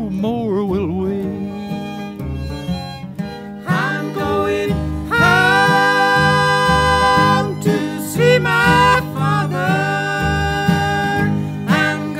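Bluegrass band's instrumental break between sung verses: a fiddle plays the slow melody in long held notes that slide up into pitch, over a steady upright-bass and guitar rhythm. A wavering held note fades in the first second before the fiddle line comes in louder about four seconds in.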